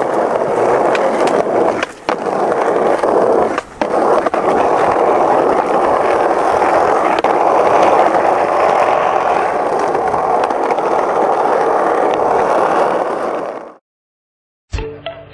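Skateboard wheels rolling fast on rough asphalt, a steady loud rumble with two brief breaks about two seconds and three and a half seconds in, fading out just before the end.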